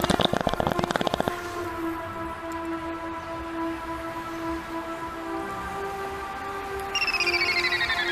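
Electronic music: a fast, dense beat cuts off about a second in, leaving several steady held synth notes. Near the end a falling, stuttering synth sweep comes in.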